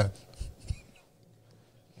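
A short pause in the talk: a couple of faint soft taps in the first second, then near silence, only room tone.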